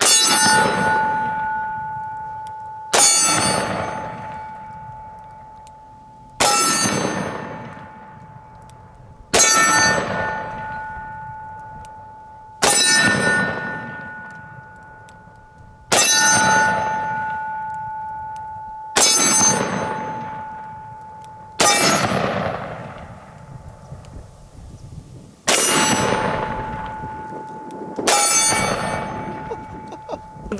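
Ten heavy-magnum revolver shots about three seconds apart from a pair of snub-nose Smith & Wesson revolvers, a 460 Magnum and a 500 Magnum, each shot trailing off in a long echo. Most shots are followed by the steel target ringing with a steady clear tone.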